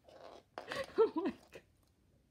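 A young woman's wordless excited vocal sounds: a breath, then a few short squeals whose pitch rises and falls, sounds of overwhelmed delight.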